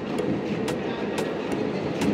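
Steady din of a busy airport terminal hall, with sharp, evenly spaced clicks about twice a second.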